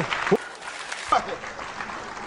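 Studio audience applauding, with brief snatches of a voice over the clapping.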